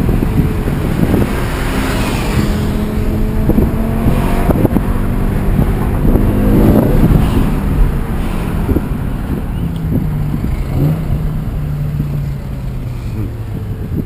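BMW M6's naturally aspirated V10 engine heard from inside the cabin while driving, its pitch rising and falling with the throttle and loudest about six or seven seconds in, then settling to a steadier lower note that slowly falls near the end.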